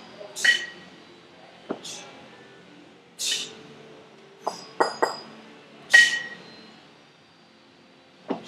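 Kettlebell reps: sharp, ringing metallic clinks from the kettlebell as it is swung and caught in the rack, with short hissing bursts, in a pattern that repeats every few seconds.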